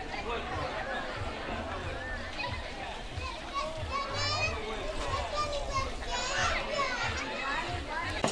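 A group of children playing and chattering, many voices overlapping.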